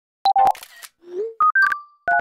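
Generative electronic music made of short synthesized blips at changing pitches, starting after a brief silence. Midway come a short hiss and a low tone that slides upward, then more high blips, the last one held.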